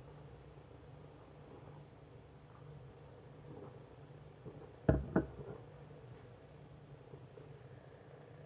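Two quick knocks about five seconds in, a stemmed beer goblet being set down on a kitchen worktop, over a low steady hum.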